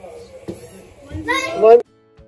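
A small plastic water bottle flipped onto a carpeted floor, landing with a soft thud, then a child's loud excited shout rising in pitch that cuts off suddenly near the end.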